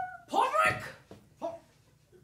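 A performer's wordless, drawn-out vocal calls. A held note ends just after the start, then a loud call rises and falls in pitch about half a second in, followed by two short calls.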